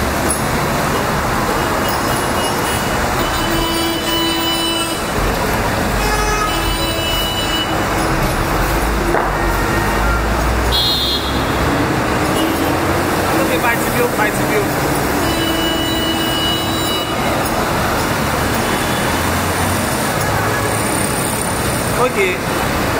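Steady road traffic noise from passing vehicles, with indistinct voices in the background.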